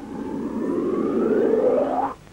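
A man blowing a motorcycle tyre up by mouth through a hose: a breathy rush of air with a whistle rising steadily in pitch, building in loudness and stopping abruptly at the end.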